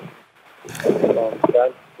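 Speech: a short pause, then a voice starts talking about a second in.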